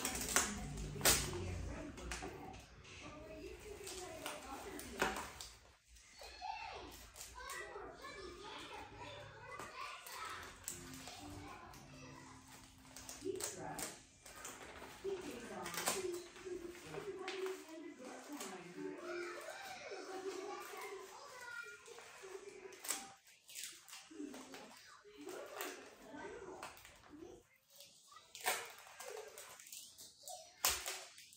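A child's quiet, indistinct voice, with scattered rustles and clicks from hands working plastic, paper and tape on a table.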